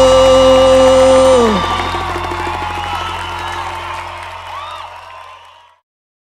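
A live band's final held chord, cut off about a second and a half in. The audience then cheers and whoops, and the sound fades steadily out to silence just before the end.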